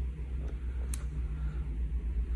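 Steady low rumble of background noise, with one faint click about a second in as a MacBook MagSafe power connector is pulled off the laptop's port.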